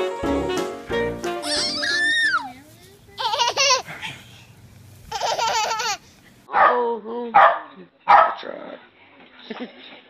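Background music that fades out about two seconds in, then a baby laughing and squealing in several short spells.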